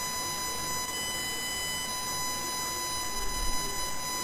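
Steady background hiss of a home screen-recording setup, with a thin continuous electrical whine from the microphone and computer. A faint low bump is heard about three seconds in.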